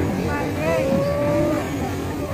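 Crowd hubbub of many overlapping voices over a low rumble. A single long, nearly level tone sounds about half a second in and lasts about a second.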